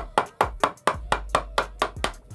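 A steel chisel being struck, chopping waste out from between drilled holes in an MDF workbench top: a quick, even series of sharp knocks, about four or five a second, each with a short ring.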